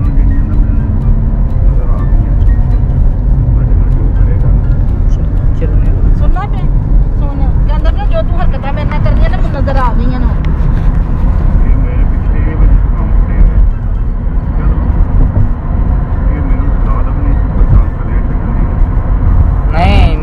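Steady low rumble of a car's engine and road noise heard from inside the cabin while driving, with voices faintly over it.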